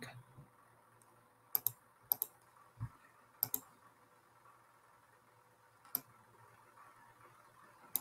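A handful of sharp computer mouse clicks, scattered over a few seconds, three of them in quick pairs, with little else heard between them.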